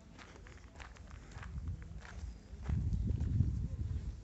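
Footsteps of a person walking, under a low rumble on the microphone that grows louder a little past halfway.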